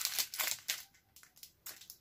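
Small clear plastic bag of tiny beads crinkling and rattling as it is handled, a quick irregular run of rustles and clicks that thins out near the end.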